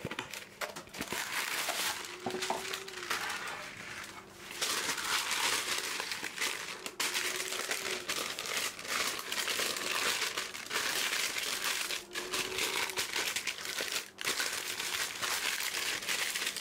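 Parchment baking paper crinkling and rustling as it is handled and pressed into a round cake tin to line it. A few light clicks come first, then the crinkling grows louder and denser about four seconds in.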